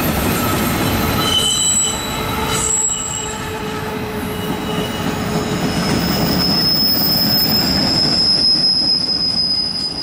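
Freight cars rolling past on jointed track, wheels rumbling and squealing. Short squeals come and go in the first few seconds, then one long high steady squeal starts about halfway through, from wheel flanges on the curve that the railfan blames for the rail grinding.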